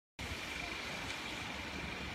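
Steady background noise with a low rumble and a faint, steady high-pitched tone, starting abruptly a moment in.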